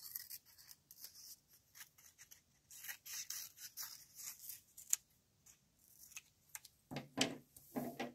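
Scissors cutting an oval out of construction paper: faint, short snipping strokes in clusters with pauses between them, the busiest run in the middle.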